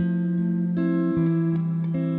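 Clean electric guitar playing a few slow, ringing picked chords, each left to sustain into the next.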